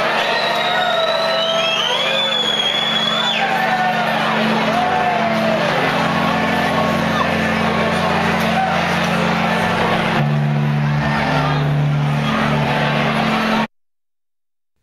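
Live band holding low sustained bass notes that shift twice, with crowd whoops and whistles in the first few seconds and a general crowd din. The sound cuts off abruptly near the end.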